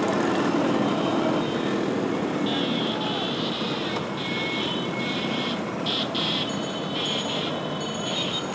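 Busy street din from a crowd of motor scooters and motorcycles running, mixed with many people's voices. It is a steady, dense noise, with a brighter high-pitched layer coming in about two and a half seconds in.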